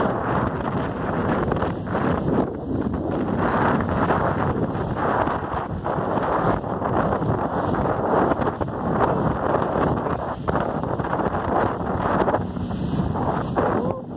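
Wind buffeting the microphone of a motorboat under way, a steady rushing noise that flutters up and down, with the boat's running noise on the water beneath it.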